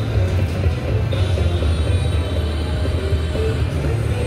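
Aristocrat Spin It Grand video slot machine playing its short electronic notes and reel-spin tones as the reels spin a free game in the bonus, over a steady low hum.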